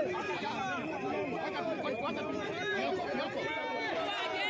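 A crowd of many people talking over one another, a steady jumble of overlapping voices with no single speaker standing out.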